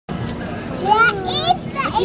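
A young child's high-pitched voice speaking, starting about a second in, over a steady hum of outdoor background noise.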